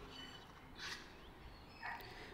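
Quiet garden background with faint, brief bird calls.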